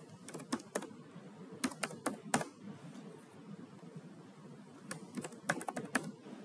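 Typing on a computer keyboard: short runs of sharp key clicks, one near the start, one about two seconds in and one near the end, with a pause in the middle.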